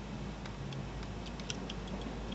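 Light clicks and ticks from a small collapsible candle lantern as its top is pulled up and its glass chimney slides out. A string of small, sharp clicks starts about half a second in, over a steady low background hiss.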